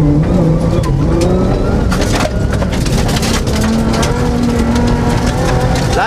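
Suzuki Grand Vitara rally car's engine running hard, heard inside the cabin, its note rising and falling with throttle and gear changes over rough ground. A flurry of sharp knocks and rattles comes about two to three seconds in.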